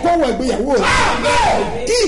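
A man praying aloud in a loud, fervent voice whose pitch swings up and down.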